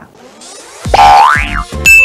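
Short musical bumper jingle: a sweep rising steeply in pitch over low beats about a second in, then a click and a bright held ding near the end.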